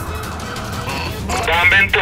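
Comic gobbling sound effect: a loud, high-pitched, rapidly warbling trill that starts about two-thirds of the way in, over a steady low rumble.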